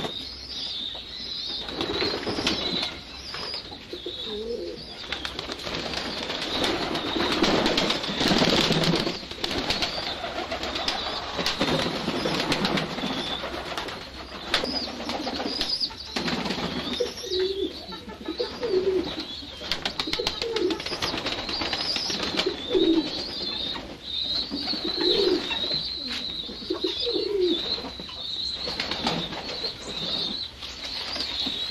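A flock of domestic pigeons cooing again and again, in many short overlapping low calls that come thickest in the second half.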